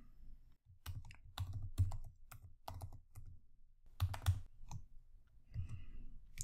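Typing on a computer keyboard: a run of irregularly spaced keystrokes as a short terminal command is entered.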